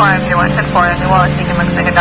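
A voice talking in the style of police radio traffic, over background music of steady held notes.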